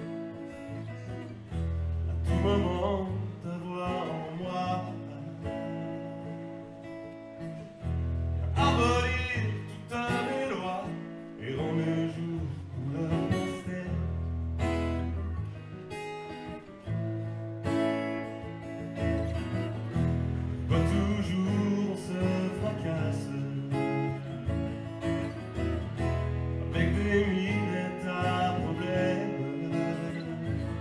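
Acoustic guitar played live with a man singing a French song over it, the voice coming and going in phrases between guitar passages.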